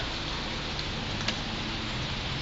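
Steady hiss of background noise, with one faint click just over a second in.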